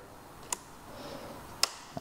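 Two short clicks about a second apart from a Vespa GTS 250's handlebar switch being flicked while the newly fitted switches are tested.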